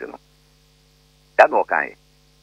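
A man speaking in short phrases, with a pause of about a second between them, over a steady low electrical hum.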